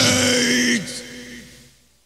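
Hardcore punk band ending a song: the drums and bass stop, and a last held note rings on. Partway through it drops, slides down in pitch and fades away to nothing.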